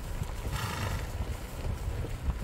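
A horse vocalises briefly about half a second in, over a steady low wind rumble on the microphone.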